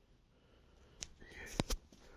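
A click about a second in, a short sniff close to the microphone, then two sharp knocks in quick succession, the loudest sounds here.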